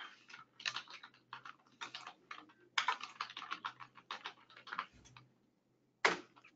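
Computer keyboard typing: a run of quick keystrokes in short bursts, stopping about five seconds in.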